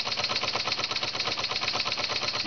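Large model steam engine running steadily and quietly with no governor, driving a small generator under load: a rapid, even beat of many strokes a second from its exhaust and moving parts.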